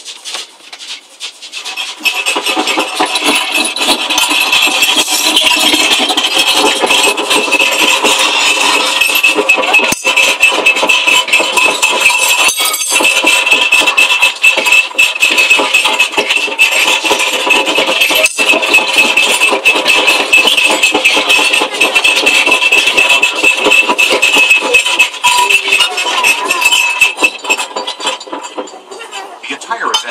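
Earthquake simulator's sound effects for a simulated major quake: a loud, continuous rattling din with a steady high ring running through it, building over the first two seconds and dying away near the end.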